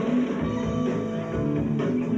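Live rock band playing, electric guitar to the fore.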